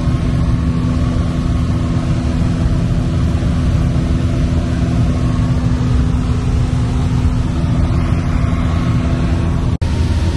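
Piper PA-28-160 Cherokee's four-cylinder Lycoming O-320 engine and propeller droning steadily at cruise, heard from inside the cabin. The sound breaks off for an instant near the end.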